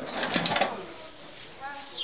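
Street ambience with people's voices in the background and a short burst of noise in the first half-second.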